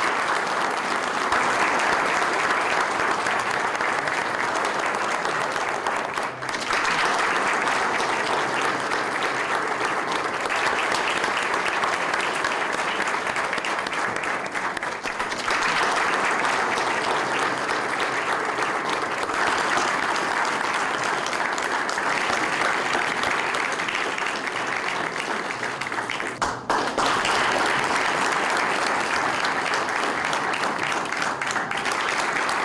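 Audience applauding steadily, with brief dips about 6, 15 and 26 seconds in.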